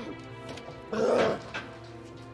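A man's strained, whimpering groan of pain about a second in: a poisoned man in distress. Sustained film-score music runs underneath.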